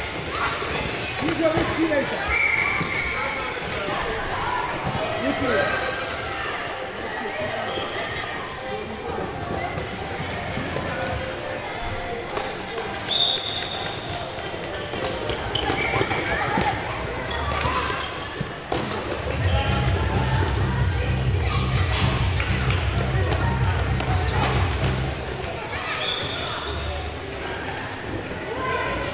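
Indoor floorball play in a sports hall: kids' voices calling across the court, with scattered sharp clacks of sticks and the plastic ball and steps on the court floor, all echoing in the hall. A low rumble joins in from the middle to near the end.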